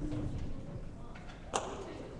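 Low background noise of a large gymnasium with one sharp knock about one and a half seconds in.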